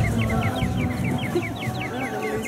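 A rapid, even run of short high chirps, each falling in pitch, about six a second, like a bird call.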